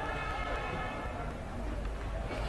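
Distant voices of players on the pitch over faint outdoor stadium ambience, with one long drawn-out call that fades out about a second in.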